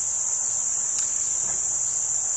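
Crickets chirring in a steady, high-pitched chorus.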